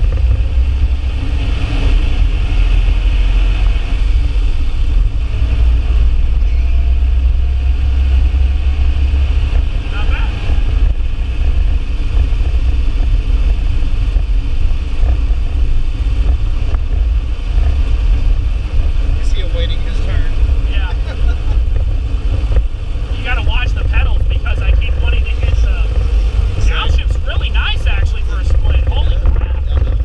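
Cabin sound of an air-cooled VW Beetle's flat-four engine pulling the car along, a steady low rumble. Short rattles or other sharp sounds cluster over it in the last third.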